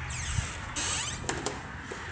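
A door creaking as it is opened: a squeak that glides down in pitch, then a louder swish and two sharp clicks.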